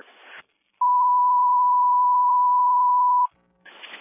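A single steady alert tone over a radio scanner channel, held for about two and a half seconds. It is the dispatch tone that pages the fire station to an injury accident call.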